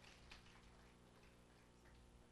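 Near silence: faint room hum with a few faint clicks, mostly in the first half-second.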